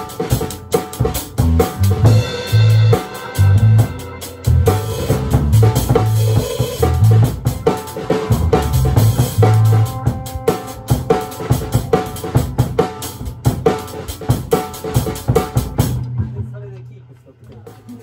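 Live band music driven by a drum kit: a busy beat of kick, snare and cymbal hits over repeated low bass notes. It fades out about two seconds before the end.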